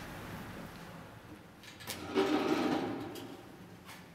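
A single scrape, like a chair slid across the floor, about two seconds in and lasting about a second, over a faint steady hiss.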